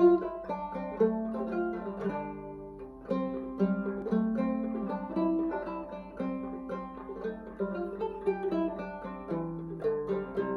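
Short-scale Carolina banjo in double C tuning playing an original tune: a steady stream of quick plucked notes, each ringing briefly before the next.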